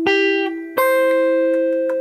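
Single notes picked on a hollow-body electric guitar, played unplugged: one at the start, then a higher note about three-quarters of a second in that rings on over a lower note still sustaining. They are notes of a C major arpeggio in the G shape, with the missing fifth being put in.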